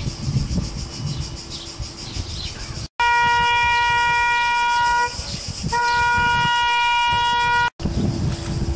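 A trumpet or bugle call of two long, steady held notes on the same pitch, each about two seconds long with a short gap between. It is a ceremonial honours signal. For the first three seconds there is only low outdoor background rumble before the call begins.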